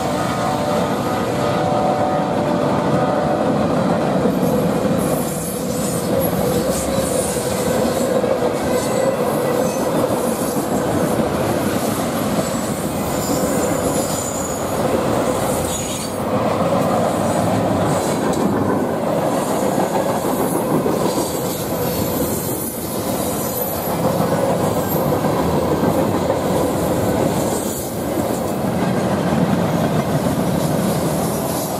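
CSX freight train rolling past at close range, its cars running over the rails with steady clickety-clack and high-pitched wheel squeal coming and going.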